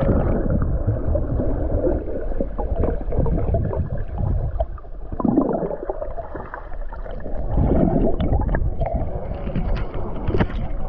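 Water sloshing and gurgling right at the microphone, muffled and low, as from a camera held at or just under the surface of a hot spring pool. It swells and fades irregularly throughout.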